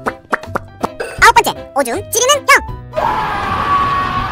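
Cartoon voice sounds and short plopping effects over light background music, with quick swooping pitches. About three seconds in, a sustained rushing whoosh with a held scream takes over as the coaster rides.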